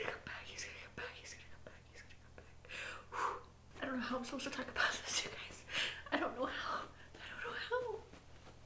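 A woman crying, with whispered, tearful half-words and breathy sobs coming in irregular bursts.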